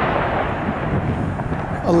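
The long, rolling rumble of an artillery shell explosion, fading slowly away after the blast. Near the end a man's voice shouts.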